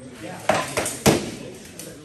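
Armored sparring blows: padded practice weapons striking shields and steel helmets and armor in a quick exchange, three sharp clattering hits between about half a second and a second in, the last one loudest, then a lighter knock near the end.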